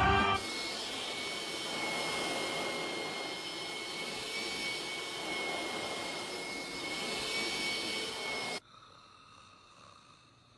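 Upright vacuum cleaner running: a steady rushing hiss with a high, even whine that cuts off suddenly about a second and a half before the end.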